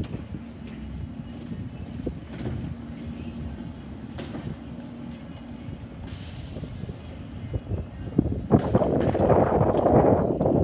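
Distant International Heil Durapack 5000 rear-loader garbage truck running, with a few light knocks. A short burst of high air hiss comes about six seconds in, and the rumble grows louder near the end.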